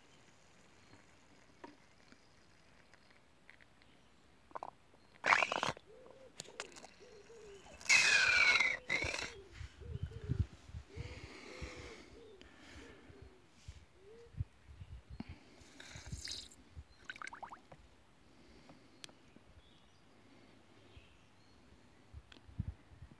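Rubber bulb syringe being squeezed into a soil burrow: mostly quiet, with two short sputtering bursts about five and eight seconds in, the second with a falling squeak. Light handling and rustling follow.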